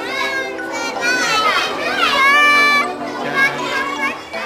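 A group of young schoolgirls chattering, laughing and shouting over one another close to the microphone, with one long, high call about two seconds in.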